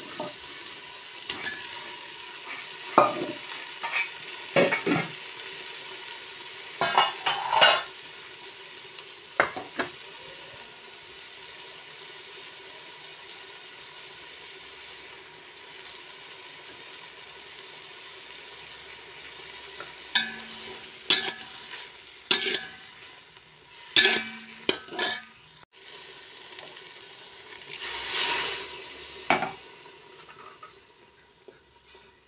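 Chopped hand greens frying in oil in a metal pot, with a steady sizzle and repeated sharp scrapes and clinks as a perforated metal skimmer stirs them. Near the end there is a longer, louder rush of hiss as water is poured into the hot pot.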